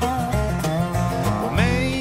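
Bluegrass band playing an instrumental break led by a dobro, a resonator guitar played lap-style with a steel slide bar. Its notes glide up and down between pitches, with one sliding up and holding about halfway through, over steady bass notes.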